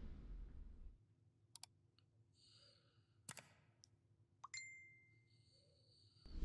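Sound effects of an animated like-and-subscribe button: a swoosh at the start, then a few sharp mouse-click sounds, and a short bell-like ding about four and a half seconds in.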